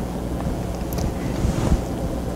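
Steady low hum and rumble of background noise, with no speech.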